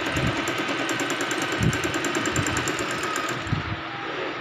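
Singer Simple electric sewing machine running and stitching fabric, its needle mechanism clicking in a fast, even rhythm. It stops about three and a half seconds in.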